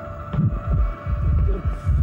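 Suspense soundtrack effect: a rapid run of deep, low thuds, several a second, over a steady high electronic drone.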